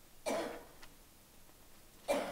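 A single short, harsh cough about a quarter of a second in.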